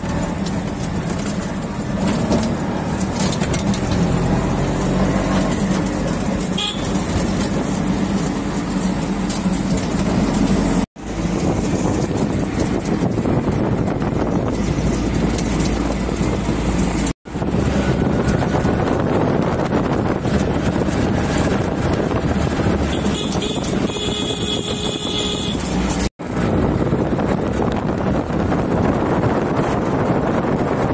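Riding inside a moving auto-rickshaw: its small engine drones steadily under rushing road and wind noise. A horn sounds for about a second and a half late on, and the sound cuts out briefly three times.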